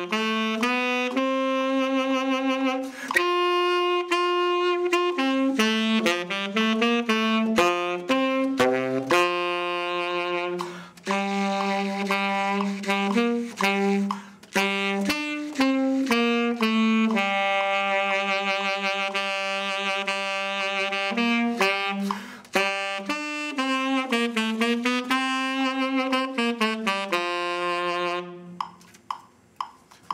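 Solo tenor saxophone playing a march melody at march tempo, one note at a time, in a steady tongued rhythm with some held notes. The playing stops about two seconds before the end.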